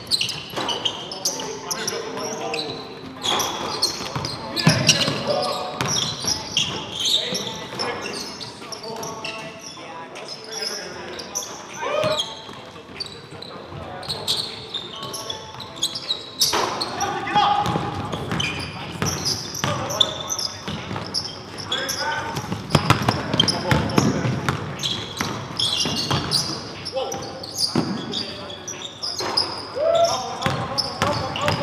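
Live sound of a pickup-style basketball game: a basketball bouncing on a hardwood gym floor, with short knocks scattered throughout and players' voices calling out between them.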